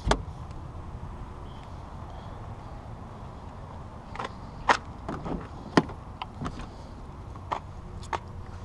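A thump at the start, then footsteps on asphalt, about two a second, over a steady low background rumble.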